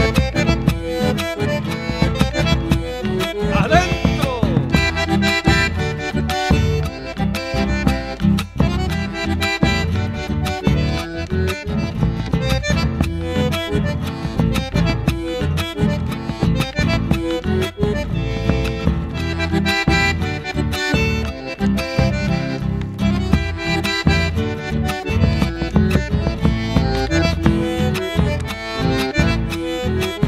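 Instrumental chacarera: an accordion plays the melody over a steady, driving rhythmic accompaniment.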